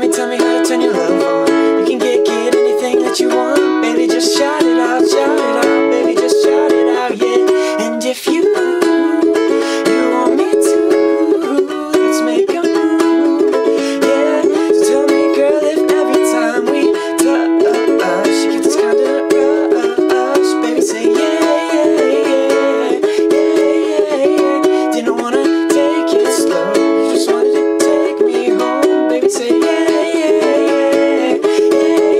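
Ukulele strummed in a steady rhythm, cycling through the four chords E, A, C-sharp minor and B in a down, down, down-up-down, down-up-down pattern. A man's voice sings along.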